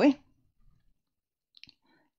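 A woman's word trails off, then near silence with a faint tap or two about one and a half seconds in.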